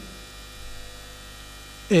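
Steady electrical mains hum in the recording chain, a low drone with faint hiss.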